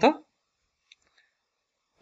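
A man's voice ends a word at the start, then near silence broken by a few faint clicks about a second in, from a stylus on the screen as a line is drawn.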